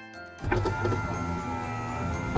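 A steady electric motor whir, a sound effect for the toy tow truck's crane, starting about half a second in over background music.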